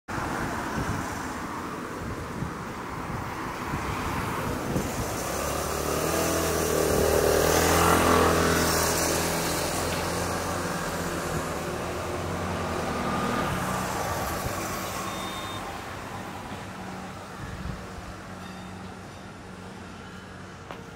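Road traffic: a motor vehicle's engine and tyres pass by, building to the loudest point about eight seconds in and then slowly fading.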